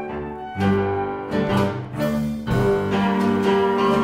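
Small ensemble playing: cello with the bow holding sustained notes over double bass and piano, with fresh chords struck about half a second, two, and two and a half seconds in.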